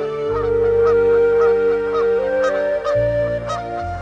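Geese honking repeatedly, a few calls a second, over background music of long held notes.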